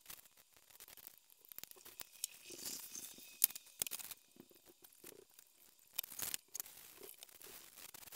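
Faint scraping and crinkling of a razor-blade scraper and paper towels working alcohol-softened polarizer adhesive off LCD glass, with scattered small clicks and one sharper click a little over three seconds in as tools are handled and set down.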